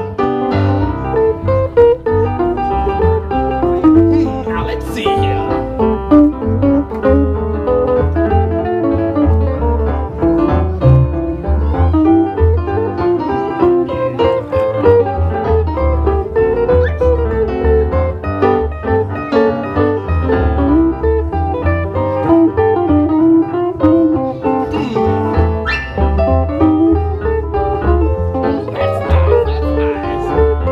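A small swing band playing an instrumental passage, with plucked upright double bass, guitar, keyboard and drums.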